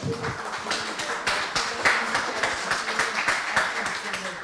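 A small audience clapping: a dense, irregular patter of hand claps.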